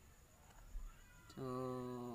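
A man's voice holding a drawn-out "Sooo" for about a second, after a brief low thump under a second in.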